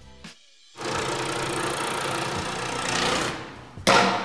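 Ceiling supply-vent fan bringing in fresh air, running with a steady whir and rush of air. It comes in suddenly about a second in and fades out near the end.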